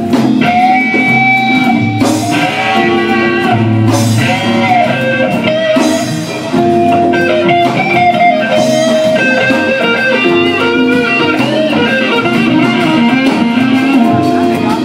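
Live blues band playing an instrumental passage, an electric guitar leading with bent and held notes over the band's bass and drums.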